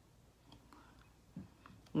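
A quiet pause: faint room tone with a few small mouth clicks and a brief low voice sound about a second and a half in. Speech begins right at the end.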